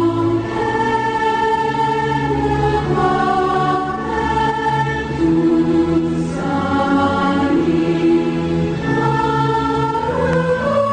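A choir singing a slow piece in long, held chords that change every second or two.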